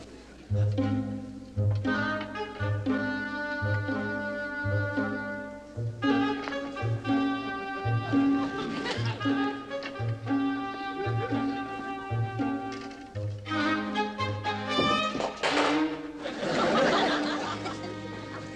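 Comedic orchestral background music: a plodding bass line of evenly spaced notes, about one and a half a second, under sustained string notes.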